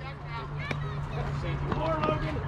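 Faint background voices over a steady low hum, with one sharp click a little under a second in.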